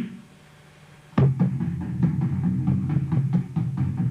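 Electric bass guitar playing a fast tapped run of low notes built on B, roughly five percussive notes a second, starting with a sharp attack about a second in.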